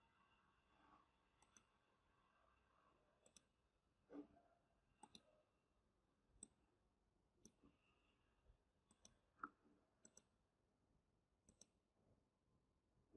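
Faint clicks of a computer mouse and keyboard, a dozen or so scattered irregularly over near silence.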